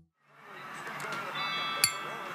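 A brief silence, then a steady hiss fades in. About a second and a half in, a bright, high chime rings briefly and ends with a sharp click.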